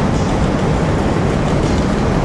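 Steady, loud rumbling noise with no speech in it.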